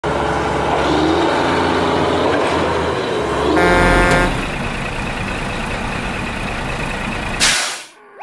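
Truck sound effects laid over toy play: a truck engine running steadily, one horn honk of under a second about three and a half seconds in, and a short air-brake hiss near the end.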